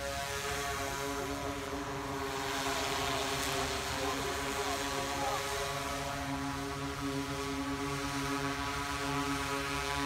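Large multirotor drone, a Freefly Alta carrying a 1000 W LED light bar, hovering overhead: a steady propeller hum made of several held tones.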